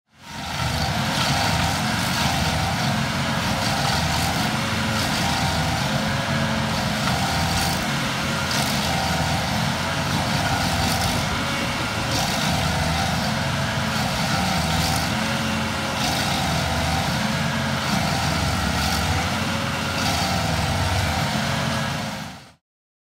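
A large engine running steadily under load, its note swelling and dipping in a regular cycle about every two seconds.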